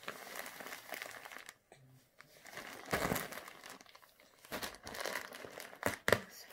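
Clear plastic sheeting over a crib mattress crinkling and rustling in uneven bursts as a baby's hands grab and pull at it, loudest about three seconds in.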